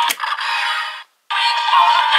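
Electronic music and a synthesized voice from a DX Kamen Rider Revice transformation toy's small speaker, with a sharp plastic click just after the start. The sound cuts off about a second in, and a new sound phrase starts a moment later.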